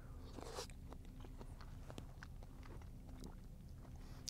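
Very quiet: a faint low rumble with a few small, faint clicks scattered through it.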